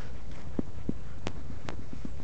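Two dogs play-wrestling, heard as a few short snaps and scuffles, with two sharp clicks in the second half, over a steady low rumble.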